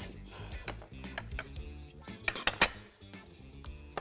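Utensils clinking against serving dishes as sauce is served, a scattering of light clinks with three sharper ones in quick succession about two and a half seconds in, over soft background music.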